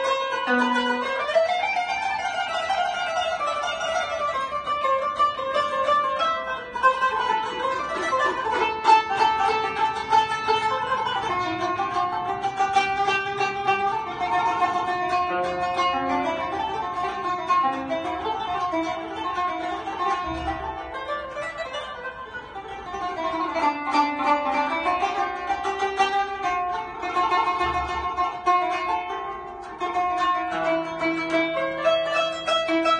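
Kanun, the Turkish plucked zither, played solo: a flowing melody of plucked notes.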